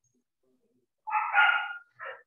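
An animal call about a second in, lasting under a second, followed by a shorter call at the very end.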